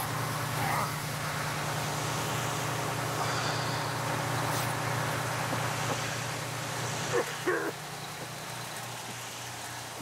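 Steady rumble and hiss of a fire engine running with a fire hose spraying water. Two short vocal sounds break through, about a second in and again about seven seconds in.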